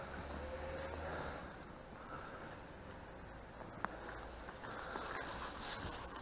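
Faint outdoor background: a low steady rumble, with one sharp click about four seconds in.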